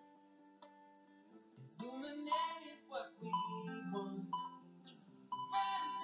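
Background music with sustained instrumental notes, faint for the first second and a half and then louder.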